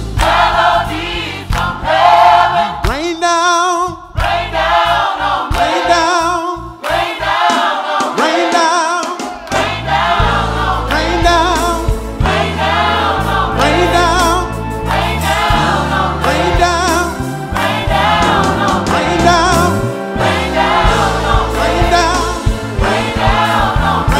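Gospel choir singing a lively praise medley over a steady beat and bass; the low backing drops away for a few seconds early on and comes back about ten seconds in.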